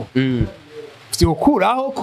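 A man speaking into a handheld microphone in short phrases, ending in a long drawn-out vowel.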